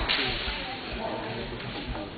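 A single sharp crack right at the start, then the faint murmur of voices and soft thuds of a large sports hall.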